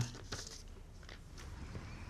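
A quiet pause: faint background noise with a few soft clicks.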